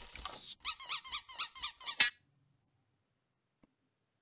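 Cartoon squeak sound effect: a quick run of high, gliding squeaks, about six a second, that stops about two seconds in.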